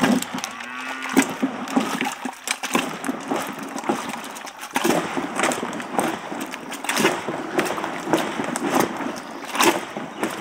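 Wooden plunger churning raw cow's milk in a tall black churn to make butter: a steady rhythm of plunging strokes, each with a slap and slosh of frothy milk. A short pitched call sounds in the first second.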